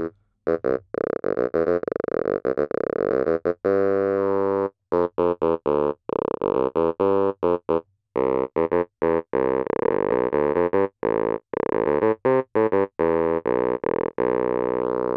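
Korg opsix FM synthesizer playing a low sawtooth through three parallel resonant band-pass filters set to fixed cutoffs. It plays many short staccato notes and one held note about four seconds in, with a vowel-like, vocal formant tone. The filter cutoff is being turned while it plays.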